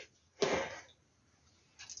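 A single short, muffled cough from behind a hand, about half a second in.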